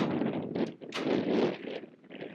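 Wind rushing over the microphone in two gusts, with a sharp knock right at the start.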